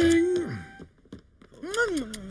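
A man's wordless, held hum, a steady pitch for about half a second, then a short rising-and-falling vocal sound near the end.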